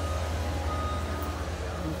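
A truck's engine idling with a low, evenly pulsing rumble, with a couple of faint high beeps from a vehicle's reversing alarm.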